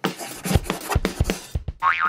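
Cartoon background music with a steady drum beat, then near the end a cartoon sound effect whose pitch wobbles rapidly up and down, springy like a boing, as a character pops up.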